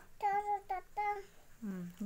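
A toddler's high-pitched voice speaking a few short syllables, then a briefly heard lower-pitched voice near the end: speech only.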